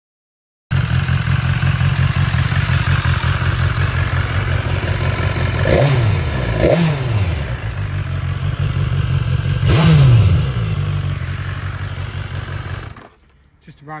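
BMW S1000XR's inline-four engine idling, blipped on the throttle three times (about six, seven and ten seconds in), each rev rising and falling back to idle. The sound starts about a second in and stops abruptly near the end.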